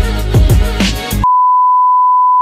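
Outro music with a steady beat of about two strokes a second, cut off abruptly about a second and a quarter in by a loud, steady, single-pitch test-tone beep, the tone that goes with colour bars.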